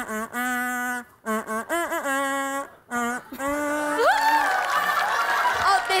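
Gold plastic toy trumpet blown in a short run of held, buzzy notes on a few different pitches, some of them wavering, played as a simple tune. About four seconds in, the tooting stops and laughter and voices take over.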